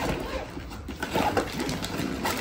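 Zipper of an insulated cooler bag being pulled open, with the bag's fabric rustling and scratching as it is handled.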